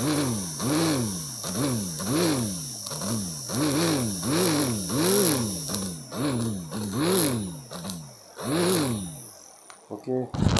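Two small brushed DC motors with propellers, run from a homemade 12-volt lead-acid battery, whine up and falling back in pitch about a dozen times. The supply wire is tapped on and off the battery terminal, and sparks crackle at the contact. There is a longer pause before the last spin-up near the end.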